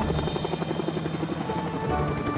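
Helicopter rotor chopping steadily as the helicopter hovers low and comes in to land, over background music.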